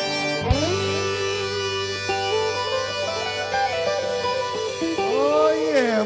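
A live Cajun/swamp pop band with button accordion near the end of a song. A full held chord is cut off by a sharp hit about half a second in. A held low bass note then carries on under a plucked-string lead line, which turns to rising-and-falling bent notes near the end.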